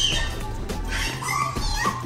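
Background music with a golden retriever making several short, high-pitched calls over it.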